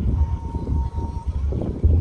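Wind buffeting an outdoor phone microphone: a loud, irregular low rumble, with a faint steady tone that stops a little over a second in.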